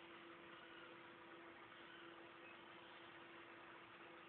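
Near silence: a steady faint hiss with a low, constant hum under it.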